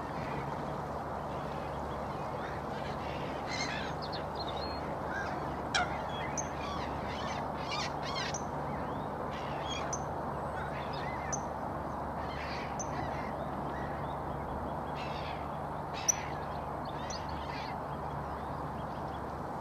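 Short bird calls coming now and then over a steady rushing background with a low hum, and two sharp clicks, one about six seconds in and one near the end.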